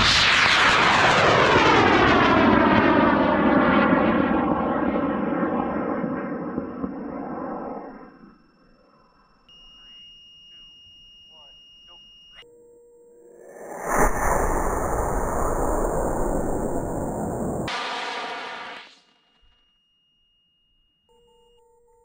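A high-power rocket motor firing at liftoff some distance away: a sudden loud roar whose pitch sweeps steadily downward as the rocket climbs away, fading over about eight seconds. A second, similar rushing roar starts abruptly about fourteen seconds in and lasts about five seconds.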